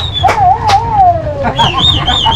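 Waterbirds from a large flock calling: overlapping wavering whistled calls that rise and fall in pitch, with sharp clicks, over a low steady rumble.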